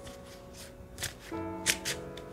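Tarot cards being shuffled by hand in a few short bursts, about a second in and twice near the end, over sustained background music with held notes.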